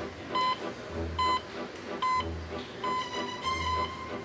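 Background music with a steady low bass thump and short, high beeps about once a second. The beeps come thicker and faster near the end.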